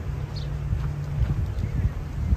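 Footsteps knocking along a park path over a low rumble of city traffic and wind, with a few short bird chirps.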